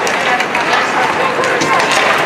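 Ice hockey play heard live in a rink: skates scraping the ice and sharp clacks of sticks and puck, under shouting voices of players and spectators.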